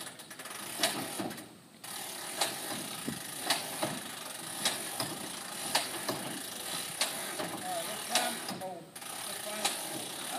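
Fairchild PT-19's Ranger inline-six engine being pulled through by hand at the propeller to prime it before a hand-prop start, with a sharp mechanical click about once a second.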